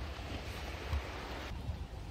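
Wind rumbling on the microphone over sea water, a steady low buffeting with a faint wash of water; the higher hiss drops away about one and a half seconds in.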